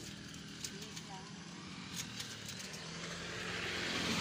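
Outdoor ambience of faint voices, with the noise of a motor vehicle growing steadily louder toward the end.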